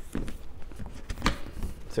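Cardboard gift box being opened by hand: a hinged lid lifted and swung back, giving light rubbing and a few soft knocks, one a little louder just past halfway.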